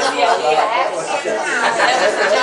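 Several people chatting at once, voices overlapping in a room.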